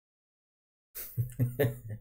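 Silence for about a second, then a person laughing in short, quick bursts.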